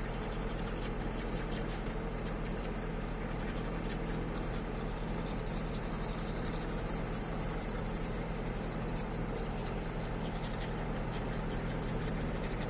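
Toothbrush scrubbing teeth, a continuous fast scratchy brushing, over a steady low engine hum.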